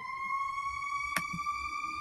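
A steady high tone, held and very slowly rising in pitch, with a single sharp click a little past one second in.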